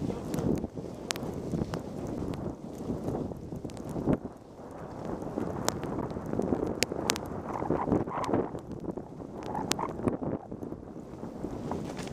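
Skis sliding and scraping over snow on a downhill run, with wind rushing across the microphone and a scatter of sharp clicks.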